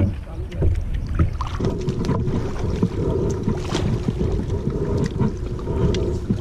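Wind rumbling on an action camera's microphone over water sounds from kayak paddling, with scattered short splashes. A faint steady hum sets in about a second and a half in.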